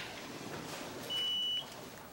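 A single short electronic beep: one steady high tone lasting about half a second, a little over a second in, over faint room noise.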